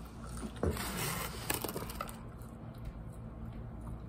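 Wet, squishy eating and food-handling sounds close to the microphone: buffalo chicken wings being handled, dipped in white dip and chewed, with a couple of sharp clicks a little after half a second and about a second and a half in.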